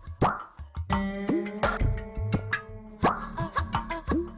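Comic background music: a rhythmic run of short plucked notes with sharp percussive hits and short cartoon-style sound effects that drop in pitch.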